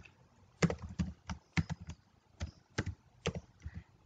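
Computer keyboard being typed on: about a dozen separate key clicks at an uneven pace, with a short pause midway.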